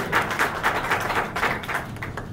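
Audience applauding: a patter of hand claps from a roomful of people that dies away near the end.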